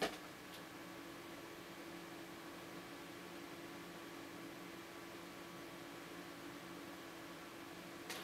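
A single sharp click at the start, then the steady, faint hum of a desktop PC's cooling fans, with a low steady tone, while the overclocked CPU runs under benchmark load.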